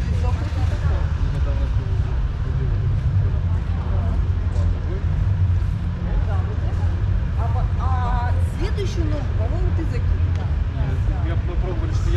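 Steady low outdoor rumble, with faint voices of people talking, clearest about two-thirds of the way in.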